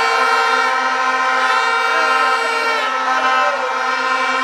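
A crowd blowing many horns at once: several long, steady notes at different pitches overlap, and some drop out or change about three seconds in.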